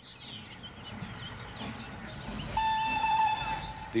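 Steam hissing, then a steam whistle blowing one steady note for a little over a second near the end, with faint bird chirps early on.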